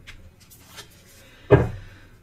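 A single dull thump about one and a half seconds in, like something knocking against a table or cupboard, with a few faint clicks before it.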